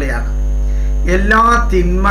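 Steady electrical mains hum running under the recording, with a short stretch of a man's voice about a second in.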